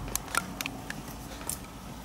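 A few light clicks and taps, about five in two seconds, over a low steady room hum.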